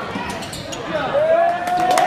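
A basketball bouncing on a gym court amid crowd and bench voices, with scattered sharp knocks. About a second in, a long held yell rises over the crowd noise as the gym gets louder.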